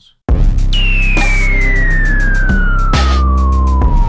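A trap beat playing back from FL Studio, cutting in loud about a quarter second in, with heavy 808 bass, drum hits and rapid hi-hats. Over it a single high synth tone slides slowly and steadily downward in pitch, like a siren winding down.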